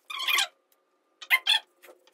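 Felt-tip marker squeaking across paper while writing: one longer stroke at the start, then a quick run of three or four short strokes a little past halfway.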